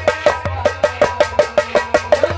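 Harmonium playing sustained reedy chords over a quick, steady percussive beat of about six strikes a second.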